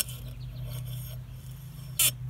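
Fishing line sawing back and forth through the foam-backed adhesive pad under a stick-on blind spot mirror: a faint, steady rubbing scrape.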